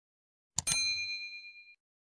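A short mouse-click sound effect, then a bright notification-bell ding that rings for about a second and fades away.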